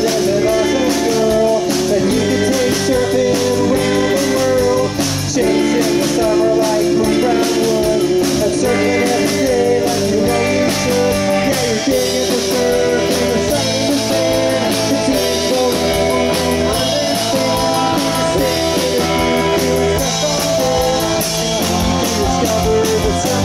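Live surf-pop rock band playing through a stage PA: electric guitars and drum kit with a wavering melody line over a steady beat.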